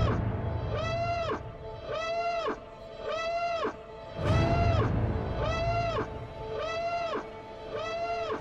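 Trailer sound design: a pitched wail rises and falls about once a second, over and over like an alarm. Deep low booms swell near the start and again about four seconds in.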